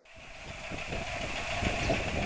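Steady outdoor background with a low, uneven engine-like rumble and a constant higher hum, fading in at the start.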